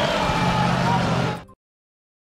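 A car driving past on the street, with a crowd's voices behind it. The sound cuts off abruptly about one and a half seconds in.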